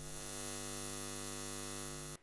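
Steady electrical hum of a neon sign, a buzz with many overtones, used as a sound effect.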